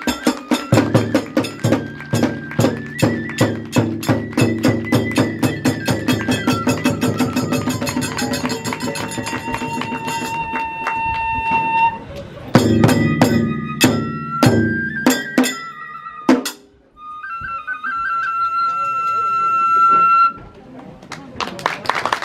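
Kagura hayashi music: a fast, even beat of taiko drum and small hand cymbals under a bamboo transverse flute melody. About halfway the beat breaks off and then returns for a few more bars. After a short pause the flute plays a last held phrase alone, and the music ends near the end.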